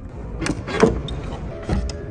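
The electric fuel filler door being opened: clicks from the release button and the flap's actuator, then a low thump as the door pops open near the end.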